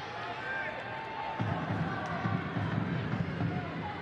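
Soccer stadium ambience: a steady crowd murmur with faint distant calls and voices, a little louder in the middle.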